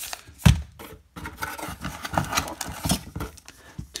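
Sealed foil trading-card packs crinkling and rustling as they are handled and laid down on a table, with small clicks. One sharp thump comes about half a second in.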